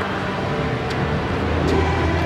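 Street traffic noise: the steady hum of passing vehicles, with a low rumble that builds in the second half as a vehicle draws closer.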